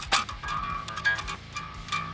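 Heavy 68-gauge low string of an electric guitar plucked a few times, starting with a sharp snap, its notes ringing and fading. The string is old and dull, and loosening it and slapping it against the fretboard has given it back a little zing: "mildly better".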